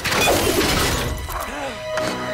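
Film-trailer sound design: a sudden crash with shattering right at the start, over dramatic music, with a few short curving tones near the end.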